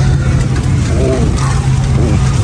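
Steady low hum of an Airbus A330-900neo's cabin air system while the airliner sits at the gate for boarding.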